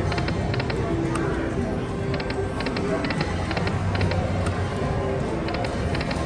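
Aristocrat Dragon Link slot machine playing its game music while the reels spin, with clusters of short, high electronic chimes repeating every second or so.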